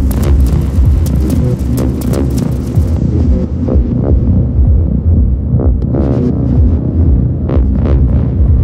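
Electronic ambient music: a heavy throbbing low drone under sustained synth chords, with percussive hits. The treble drops away about three seconds in, narrows further, and comes back near the end.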